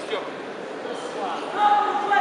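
Voices echoing in a large sports hall, with a loud, long, drawn-out shout starting about a second and a half in.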